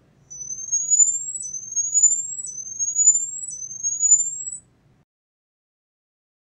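PZT piezoelectric patch on a bolted test structure, driven with a swept-sine excitation over 6 to 8 kHz for an impedance-method structural health check. It sounds as four high-pitched rising sweeps, each about a second long, back to back, stopping about a second before the end.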